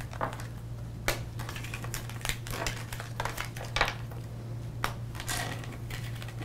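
Tarot cards being picked up off a wooden table and gathered into a stack, with scattered light taps and soft slides of card on card and on wood. A steady low hum sits underneath.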